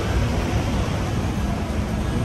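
Steady city street noise: an even rushing hiss with a low rumble, typical of road traffic on a wet street.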